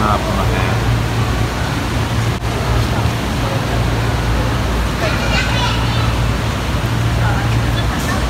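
Steady low hum and rushing wash of water circulating through a large aquarium tank, with its pump machinery running. Faint voices come in about five seconds in.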